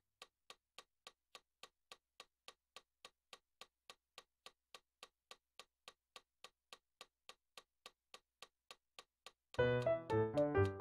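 Metronome clicking steadily, about three and a half clicks a second. Near the end, loud digital piano notes and chords come in over the click.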